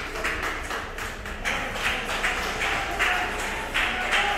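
Footsteps tapping on a hard corridor floor, several a second and uneven, as a group of people walk.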